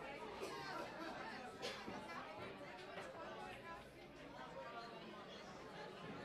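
Faint background chatter of several people talking in a large hall, with a single light click about two seconds in.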